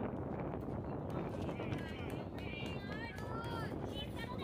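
Spectators and players at a youth baseball game calling out. High voices rise and fall from a little under two seconds in, over a steady low background rumble.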